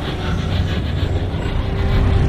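Heavy, steady low rumble with a rattling edge: a TV sound effect for a seismic shockwave power being unleashed.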